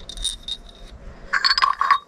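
Small ceramic wedding bell rung by hand: a faint ring at the start, then a quick run of clinking strikes near the end, the loudest part.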